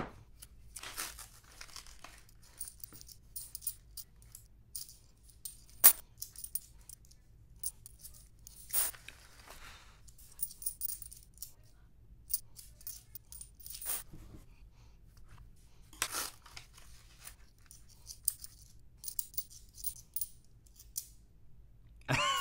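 Quarters clinking and sliding against one another as they are fingered through, with paper coin-roll wrappers being torn open. The sound is a run of light clicks and rustles, with a few louder clinks or rips scattered through and a sharp click at the very start.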